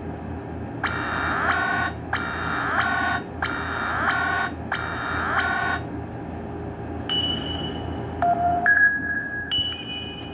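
Nokia 130's small loudspeaker playing a Nokia 5228 ringtone: a short electronic beeping phrase repeated four times, about once every 1.2 s. After a pause, a few held single tones at changing pitches sound near the end.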